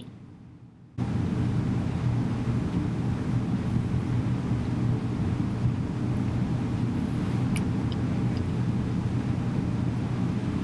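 Steady low rumble with a hum, starting suddenly about a second in after near silence. A few faint light clicks come near the end.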